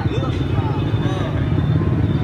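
Voices talking over a steady low rumble of street noise.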